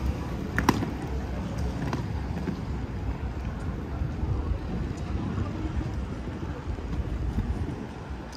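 City street ambience: a steady low rumble with passers-by talking, and a sharp click a little under a second in.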